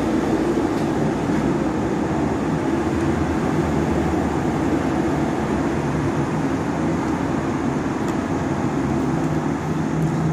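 Steady road traffic noise as cars, a taxi and a coach pass on a multi-lane road, an even wash of engine and tyre noise with a steady low hum under it.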